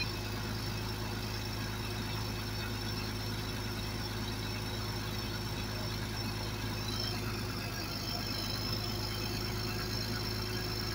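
Diesel engine of a 1993 John Deere 750B crawler dozer running at a steady speed while its hydrostatic drive pressures are held for a gauge reading. A faint high whine joins about seven seconds in.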